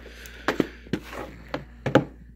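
Plastic DVD case handled on a wooden tabletop as it is being opened: a handful of sharp clicks and knocks over light rustling, the loudest knock near the end.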